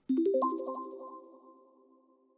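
Short electronic chime used as a title-card transition: a bright ding with a quick upward run of notes that rings on and fades out over about a second and a half.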